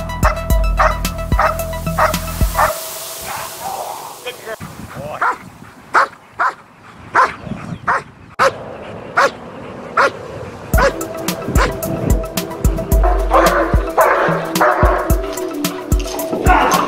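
A protection-trained dog barking repeatedly in short, separate barks over background music.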